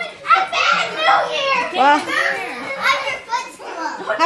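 Young children's high-pitched voices, shouting and squealing without clear words, as they play a chase game.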